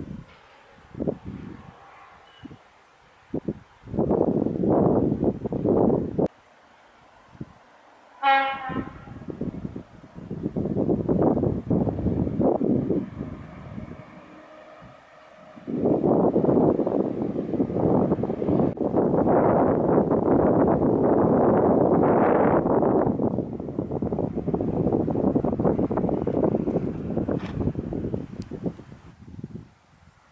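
Wind buffeting the camera microphone in gusts that start and stop abruptly, with a long heavy stretch from about the middle to near the end. A short pitched sound with many overtones comes about eight seconds in.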